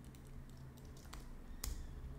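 Light keystrokes on a computer keyboard, a few faint taps with a louder click near the end.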